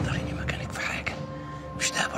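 Soft, half-whispered speech over quiet background music with held steady tones.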